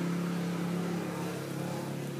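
A steady low hum with a faint hiss over it, holding level throughout.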